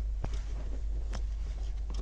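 Electrical connector being pushed back onto a truck's brake pressure sensor and wiring being handled: a few faint clicks, the first about a quarter second in, over a steady low hum.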